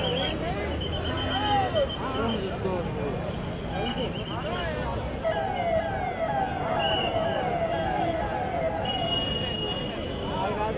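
A siren in a fast yelp, its pitch sweeping about three times a second, starting about five seconds in and stopping near the end, over the voices and shouts of a crowd.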